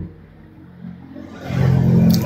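A low engine hum in the background, rising in level about a second and a half in.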